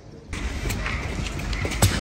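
Loud rustling and handling noise close to the microphone, from a shirt being pulled off over the head, with scattered clicks and a sharp knock near the end.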